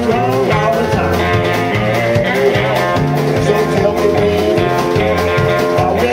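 Live blues trio playing loud: an amplified cigar-box-style guitar with bending, gliding notes over a repeating bass line and drums.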